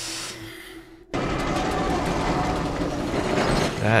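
A deep breath, then about a second in a sudden loud rushing, rumbling sound effect that lasts nearly three seconds: a man transforming into a monster in the TV episode's soundtrack.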